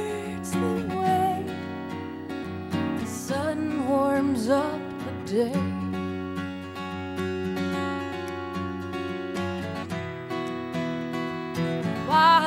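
Live acoustic song: a woman's sung melody over acoustic guitar accompaniment. The voice comes in with a bending, held line a few seconds in, while the guitar rings on underneath throughout.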